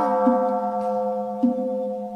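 A Buddhist bowl bell ringing on after a single strike, several clear tones held steady, over a low steady accompanying tone.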